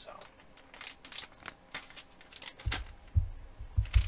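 Crinkling and rustling of a clear plastic soft-bait package as it is handled, then a few dull low thumps near the end.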